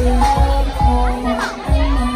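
Loud hip-hop music on a nightclub sound system, with heavy bass notes, and the crowd's voices talking and shouting over it.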